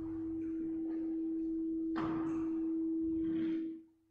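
A single steady pure tone, around the E above middle C, holding loud and then cutting off abruptly just before the end. A few soft rustles and a light knock about two seconds in.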